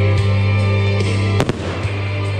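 An aerial firework goes off with one sharp bang about one and a half seconds in, with a few fainter pops around it. A song plays loudly and steadily underneath the whole time.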